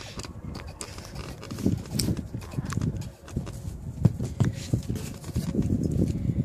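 A screw being turned by hand with a screwdriver into a wine bottle's cork: irregular small clicks and knocks over handling noise.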